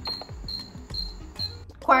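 Short high-pitched electronic beeps repeating about two or three times a second, stopping about a second and a half in.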